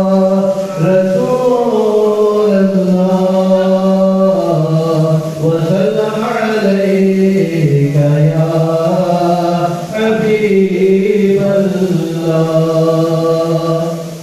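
A man singing a naat unaccompanied into a microphone, drawing out long held notes that glide up and down between phrases, with few clear words. The voice stops right at the end.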